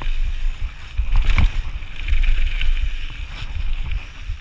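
Orange Five mountain bike riding fast down a loose gravel trail: tyres crunching over stones, with sharp rattles and knocks from the bike over bumps. Heavy wind buffeting on the chest-mounted camera's microphone runs underneath as a gusty rumble.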